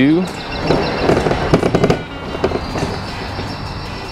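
Pride ZT10 mobility scooter rolling over a concrete walkway, its frame and front basket rattling and clattering through the first half, then running more steadily with a faint electric motor whine.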